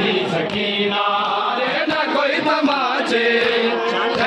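Crowd of men chanting a Shia noha lament in unison. Sharp slaps of hands on bare chests (matam) cut through about once a second.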